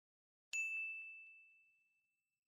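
A single bell 'ding' sound effect about half a second in: one bright, high tone struck once that rings out and fades over about a second.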